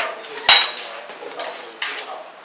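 A few sharp clinks and knocks of hard objects, the loudest about half a second in, with a fainter one near the end.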